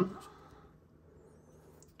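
A man's voice finishing a word, then near silence: faint room tone.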